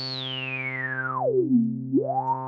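A Critter & Guitari 201 Pocket Piano's resonant low-pass filter synth engine holds one low note while its filter is swept by hand. The whistling resonant peak glides down from high to the bottom over about a second and a half, then starts to rise again near the end.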